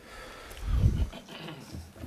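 A low, dull thump lasting about half a second, about half a second in, picked up close on a desk microphone as meeting members settle into their seats.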